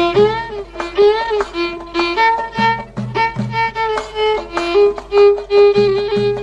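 Violin playing an Arabic taqsim, an improvised solo with sliding, ornamented notes, over percussion whose deep drum strokes come in short groups.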